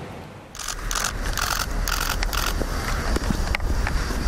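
Outdoor location sound: a steady low wind rumble on the microphone, starting about half a second in, with short scuffing or rustling noises about every half second.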